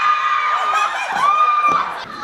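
An audience of fans screaming in response, with long high-pitched shrieks held over the crowd noise. One shriek runs to about the middle, a second rises a moment later, and the screaming falls away near the end.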